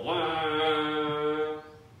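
Didgeridoo played with one steady drone note that opens with a quick rising swoop and cuts off about one and a half seconds in.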